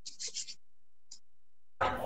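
Faint scratching: a quick run of about four short scratches in the first half second, then one more a little after a second in.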